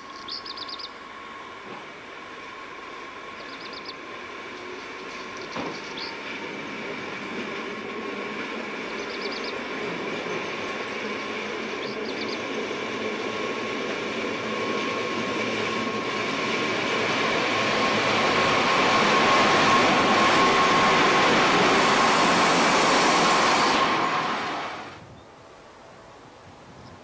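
RhB Ge 6/6 II electric locomotive approaching with freight wagons, its steady whine and the rumble of wheels on rail growing steadily louder. A few short high squeaks come in the first half. The sound drops away quickly near the end.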